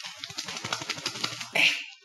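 Rapid crackling clicks and rubbing from a Lifeproof armband being handled: the plastic phone holder and nylon strap knocking and scraping against the cased iPhone for about a second and a half.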